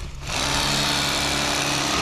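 Bubba Blade electric fillet knife running with a steady hum, its reciprocating blades slicing a crappie fillet away from the rib cage. The hum dips briefly right at the start, then runs evenly.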